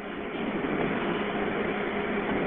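Steady hiss with a faint low hum heard over a telephone line in a gap in the call. It grows a little louder in the first half second, then holds.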